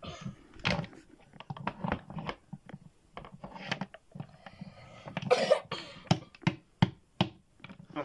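Plastic wrestling action figures knocking and tapping against a toy stage in a run of short, irregular knocks, with a few brief cough-like mouth noises.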